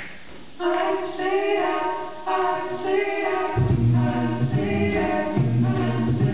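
Male a cappella vocal group singing in close harmony, coming in about half a second in; a low bass voice joins under the upper parts about three and a half seconds in.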